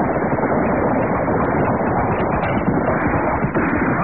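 Galloping horse hoofbeats, a radio-drama sound effect, running steadily in a dull, narrow-band old recording.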